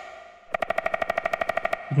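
Synthesized woodpecker pecking from an Xfer Serum patch, oscillator A alone with the noise oscillator switched off, so the tweeting and wing-flapping layer is gone. The note begins about half a second in as a rapid, even train of pitched clicks, about thirteen a second, after the reverb tail of the previous note fades.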